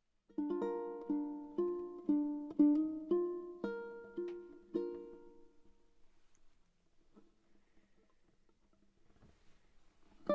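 Seilen SLTS-1950R ukulele played solo: a slow phrase of plucked notes and chords, about two a second, that stops about five seconds in and rings out, fading to near quiet.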